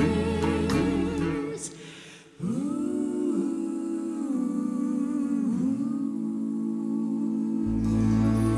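Orchestral accompaniment fades out, and a mixed four-voice vocal group then hums a long held chord a cappella, the harmony sliding and shifting twice. Low orchestral strings come back in near the end.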